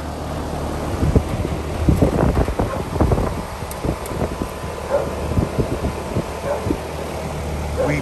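Newly installed ICP Comfortmaker air-conditioning condenser running, a steady low hum from its compressor and fan. Irregular gusts of wind buffet the microphone from about one to seven seconds in.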